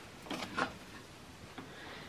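Faint handling noise of a terry towel being moved and smoothed around an embroidery hoop under the machine, with a couple of soft knocks about half a second in.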